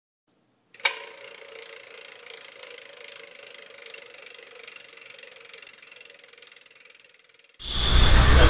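Logo intro sound effect: a sharp hit about a second in, then a fast, even ticking with a held tone that slowly fades over about seven seconds. Outdoor background noise cuts in just at the end.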